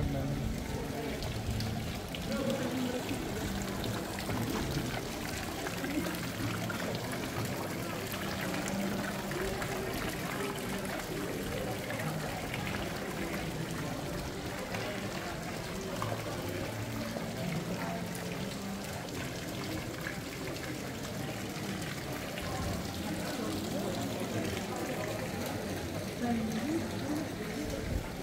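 Background chatter of passers-by in a busy pedestrian street, mixed with the steady trickle and splash of water from a stone street fountain.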